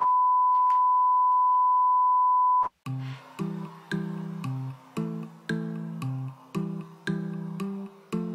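A loud, steady electronic beep at one pitch, held for nearly three seconds and then cut off suddenly. Background music of plucked guitar follows, its notes coming about twice a second.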